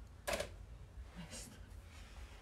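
A single sharp knock about a third of a second in, as a tossed object lands on a dining table set with pots, followed by a faint brief rustle about a second later.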